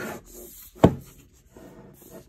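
Cardboard product box being turned over by hand, rubbing and sliding on a wooden desk, with one sharp knock a little under a second in as it is set down.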